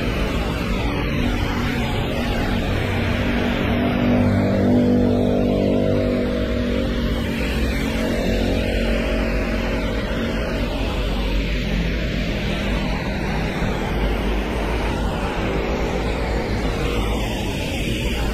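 Rain and traffic on a wet city street: a steady hiss, with a vehicle's engine hum that builds, is loudest about five seconds in, and fades away by about ten seconds.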